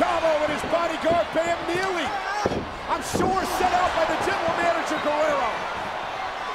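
A voice speaking or shouting, not clear enough to make out words, with a couple of sharp thuds about two and a half and three seconds in.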